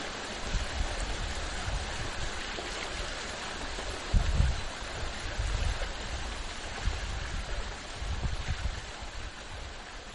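Steady rushing ambient noise with irregular low rumbles, the strongest about four seconds in; it fades toward the end.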